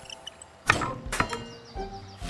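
Cartoon sound effects over light background music as a crane swings its hook: two short, sharp hits, one about two-thirds of a second in and another about a second in, the first trailing off briefly.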